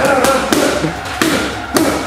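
Boxing gloves smacking into punch mitts during pad work, several sharp slaps about half a second to a second apart.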